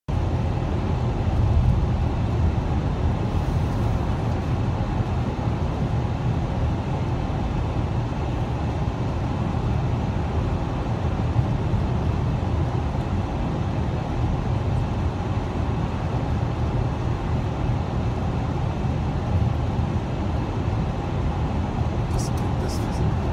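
Steady road noise heard inside a car cruising on a highway: a constant low rumble of tyres and engine, unchanging throughout.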